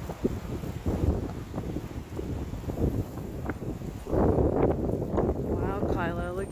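Wind buffeting the phone's microphone in uneven gusts, a low rumbling noise that grows louder for a stretch about four seconds in.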